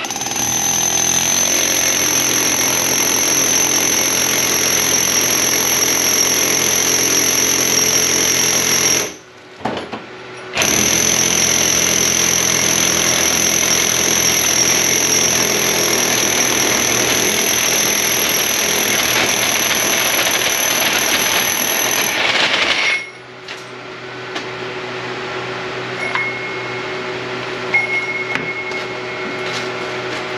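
Milwaukee rotary hammer with a core bit boring into cinder block. It runs steadily for about nine seconds, stops briefly, then runs again for about twelve seconds before stopping.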